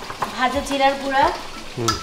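Chicken curry sizzling as it fries in its spices in a pot, under a person's voice, with a few sharp clinks of a spoon against a spice jar near the start and again near the end.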